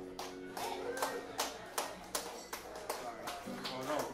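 A small audience clapping and calling out as the final acoustic guitar chord dies away. The claps are sparse and irregular, about three a second.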